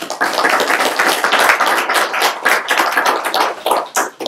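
Audience applauding; the clapping starts suddenly and fades out near the end.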